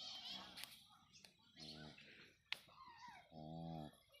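Two short, low calls from the cattle, a crossbred Holstein-Friesian cow and her just-born calf, about a second and a half apart, the second a little longer. Faint bird chirps near the start.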